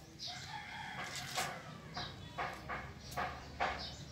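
A rooster crowing, then a run of short, sharp calls through the second half, with faint high chirps now and then.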